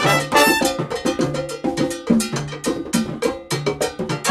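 Live Latin big band playing a mambo: trumpets, trombone and alto saxophone over congas, drum kit and a regular cowbell beat.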